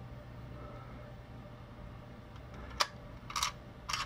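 Quiet room tone with a steady low hum, broken by a sharp click about three seconds in, a brief soft rustle, and another click near the end.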